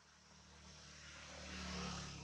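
A motor vehicle passing by, its engine and road noise getting steadily louder to a peak at the end.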